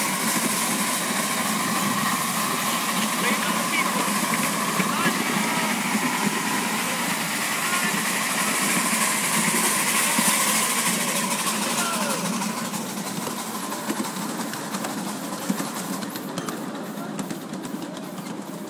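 Ride-on miniature train running along its track, a steady engine and rolling noise that eases off about twelve seconds in.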